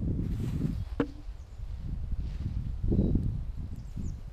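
Footsteps crunching through dry leaf litter and grass with a low rumble underneath, swelling with each stride, and a single sharp crack about a second in.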